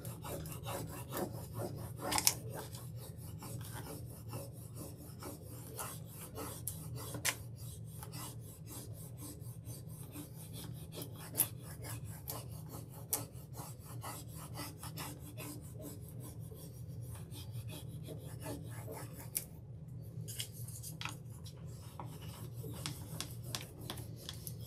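A rub-on transfer being burnished down onto a painted wooden cutout: quick, continuous scratchy rubbing strokes with a few sharper clicks, over a steady low hum.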